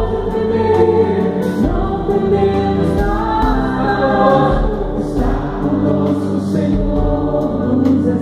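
A small vocal group of two women and a man singing a Catholic worship song in harmony into microphones, with long held notes over steady low backing notes.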